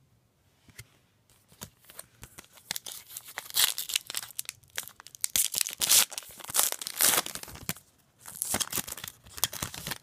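Foil trading card pack wrapper being torn open and crinkled by hand. A run of crackling rips starts about two seconds in, breaks off briefly near the end, then comes back.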